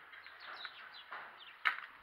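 Faint bird chirping: a run of short quick chirps in the first second, with a single sharp click about one and a half seconds in.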